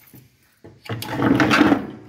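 Scrap-wood bucket holder sliding onto the steel mounting piece at the back of a John Deere X300 lawn tractor: a short click, then about a second of wood scraping over metal.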